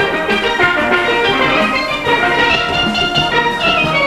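A steel orchestra playing a tune, many steelpans struck together with percussion keeping the beat underneath.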